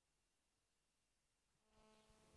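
Near silence after the music cuts off, with a faint steady hum coming in near the end.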